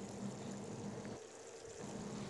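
Faint background noise with a low steady hum, dropping almost to nothing for a moment past the middle.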